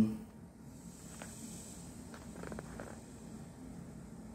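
Quiet background with a faint, steady high-pitched tone and a few soft clicks about one second in and again between two and three seconds in.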